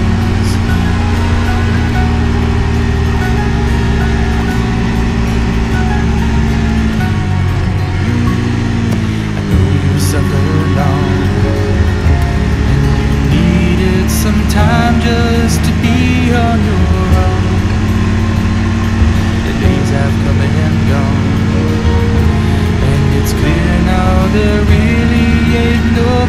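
A song with singing plays over the Brixton Cromwell 125's single-cylinder engine running at road speed; the engine note drops and climbs again about seven to nine seconds in, and bends once more a little past halfway.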